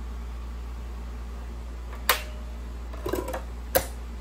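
A DVD being set into a portable Blu-ray player's top-loading disc tray by hand, heard as sharp plastic clicks: one about halfway, a short cluster of small clicks soon after, and another near the end as the disc is pressed onto the spindle. A steady low hum runs underneath.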